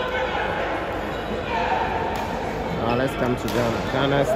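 Voices and crowd chatter echoing in a large sports hall during a badminton match, with a few sharp knocks from rackets hitting the shuttlecock; a man's voice comes in near the end.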